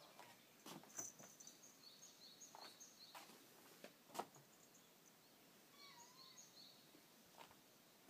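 Near silence with faint, scattered high bird chirps and a few soft rustles and thumps as a cat climbs onto a futon hung over a wall, the loudest just after four seconds.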